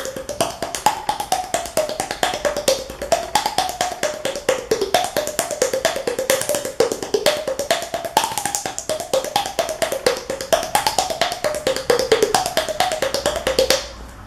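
Rapid hand slaps on the cheeks over an open mouth, each making a hollow pop. The mouth shape changes the pitch of the pops, so they rise and fall in a melody.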